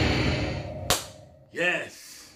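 Movie-trailer title-card sound fading out, a single sharp hit about a second in, then a brief voice near the end.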